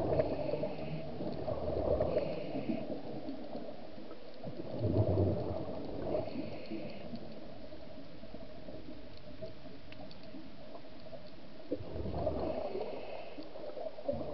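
Scuba diver breathing through a regulator underwater: short hissing inhalations and gurgling bursts of exhaled bubbles every few seconds, with a quieter stretch between about 7 and 12 seconds in.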